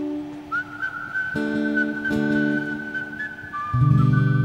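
Acoustic guitar chords with a long held whistled note above them: the whistle slides up into its note about half a second in and holds it, and a second, lower whistled note joins near the end as the guitar strums loudest.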